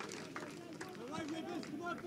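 Faint, distant shouts and calls of footballers on the pitch as teammates celebrate a goal, with a few light claps or knocks.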